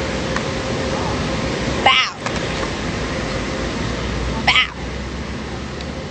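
Steady outdoor background noise, like street traffic, with two short voice-like sounds about two seconds and four and a half seconds in.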